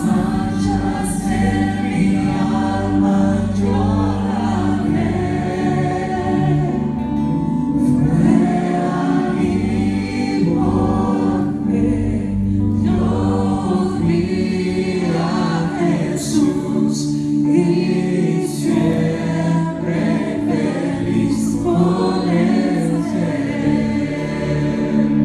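Live church worship band performing a Spanish-language hymn: singers on microphones over electric guitar, drums and keyboards, playing steadily throughout.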